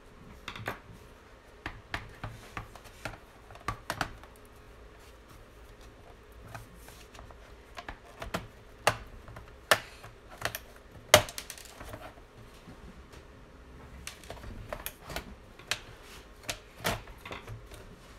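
Plastic snap-fit clips of an HP Notebook 15-ba014nr's bottom case clicking loose as the cover is worked free and lifted off, with irregular handling knocks in between. The sharpest snap comes about eleven seconds in.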